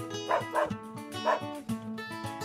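A West Highland White Terrier gives two short barks, about a third of a second in and again just after a second, over background acoustic guitar music.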